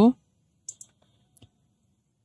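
A few short, faint clicks at a computer: two close together a little under a second in and two more about a second and a half in.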